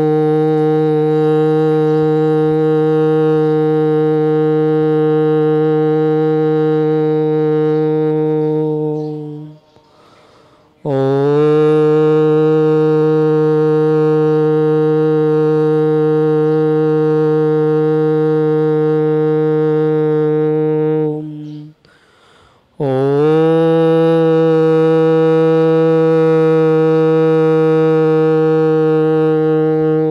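Conch shell (shankh) blown in three long, steady blasts, each swooping up in pitch at its start and then held for about nine seconds, with a short break between them.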